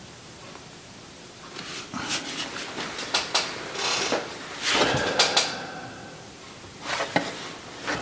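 Plastic resin containers being handled on a workbench: a string of light knocks and clatters with some rustling, starting after a quiet first second or so.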